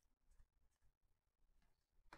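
Near silence, with a few faint flicks of paper trading cards slid off a stack by hand.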